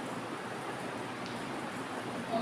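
Steady, even background hiss of room noise, with no distinct event.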